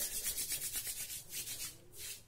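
Two hands rubbed together palm against palm in quick back-and-forth strokes, a dry brushing sound that grows fainter toward the end.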